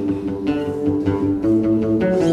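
Live band playing an instrumental passage on guitars and bass: held, picked notes in a slow melodic line, without drums.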